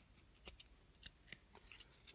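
Near silence, with a few faint, short clicks as a stack of football trading cards is handled and flipped through by hand.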